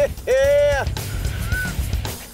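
A man's excited shout, held about half a second, over a steady background music bed.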